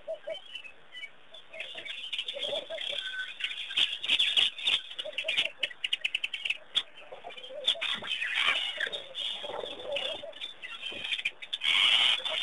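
Waterhole ambience: small birds chirping and twittering over many short clicks and taps, with lower-pitched calls now and then, most around the middle and near the end.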